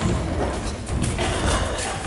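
Children's footsteps and scuffling on a wooden stage floor, a run of irregular knocks and thuds in a noisy hall.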